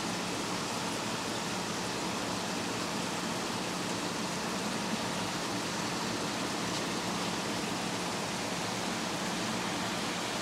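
Steady, even hiss of aquarium aeration and filtration: water and air bubbling through the fish tanks, with a low steady hum underneath.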